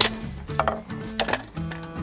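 Pneumatic framing nailer firing a nail into a pressure-treated joist, a sharp shot right at the start, followed by a few fainter wood knocks, as the joist is toenailed through its top into the ledger. Background music plays underneath.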